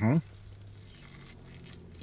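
A man's brief "mm-hmm" through a mouthful, then faint biting and chewing of a tortilla wrap over a low steady hum.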